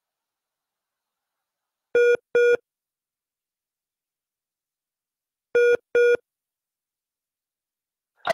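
A telephone ringing on the line in short electronic double rings: two pairs of beeps, about three and a half seconds apart. It is a call ringing before it is answered.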